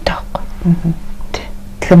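Soft, quiet speech in a conversation, with a faint steady hum underneath; loud speech starts again near the end.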